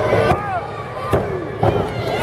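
Three sharp slaps in a wrestling ring, under voices shouting from the crowd.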